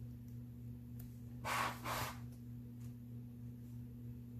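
A person's two short, audible breaths out, like a quick sigh, about a second and a half in, over a steady low hum.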